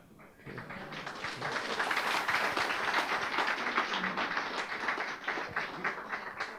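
Audience applauding: the clapping starts about half a second in, builds over the next couple of seconds, then eases off near the end.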